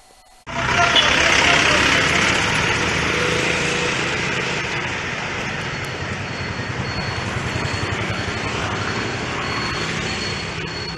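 Outdoor street ambience of road traffic noise. It cuts in abruptly about half a second in and holds steady as a continuous wash.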